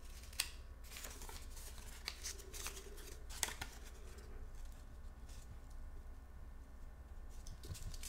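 Faint rustling and a few brief light clicks of paper leaves and a cardboard wreath ring being handled on a tabletop during gluing.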